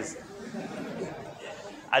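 Faint murmur of several voices in a large hall: listeners chattering quietly.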